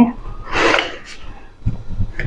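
A woman's loud breath out, a short noisy rush, about half a second in, followed near the end by a light knock.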